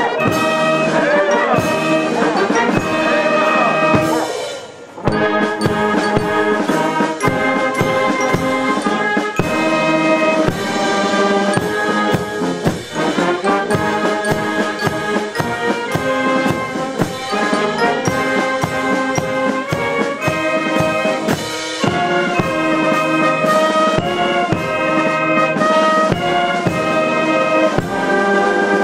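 Brass band playing a march, trumpets and trombones over a steady drum beat, with a short break about four to five seconds in before the band carries on.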